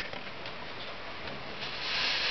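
A homemade duct-tape-wrapped bottle-rocket firecracker hissing steadily as its fuse and propellant burn, the hiss growing louder near the end. It is a dud: it burns without exploding.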